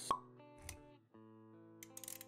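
Sound-effect pop over synthesized background music: a sharp pop just after the start, a softer low thump a little later, then held music notes resume after a brief dip about a second in.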